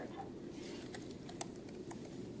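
A few faint, irregular clicks and taps, about four in two seconds, the sharpest about halfway through, over quiet room noise in a hall.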